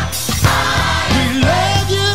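Gospel song with singing voices over a sustained bass line and drum beats; a sung line with sliding notes comes in about a second in.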